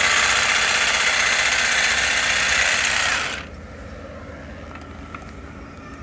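Ryobi cordless hedge trimmer running as its blade cuts into lavender, a steady, loud buzz that stops after about three and a half seconds.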